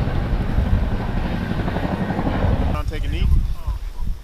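Loud low rumbling noise with a fine rapid pulse that stops abruptly about three quarters of the way through, followed briefly by voices.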